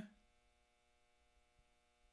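Near silence: a faint steady electrical hum under the room tone, just after the end of a spoken word.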